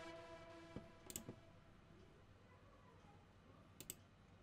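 Faint computer mouse clicks, a few about a second in and a quick pair near the end, over the fading tail of a synth note.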